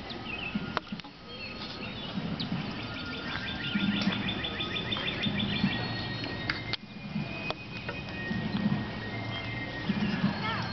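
Outdoor camp ambience: birds singing, one with a rapid trill from about three seconds in, over faint music and a low murmur of distant voices.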